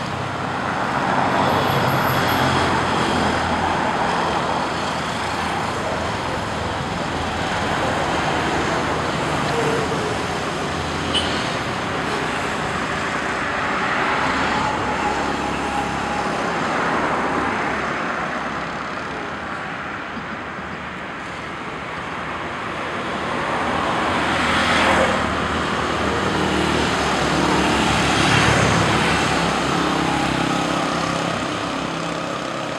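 Road traffic with motorcycles and cars passing. The engine and tyre noise runs on steadily and swells and fades as vehicles go by.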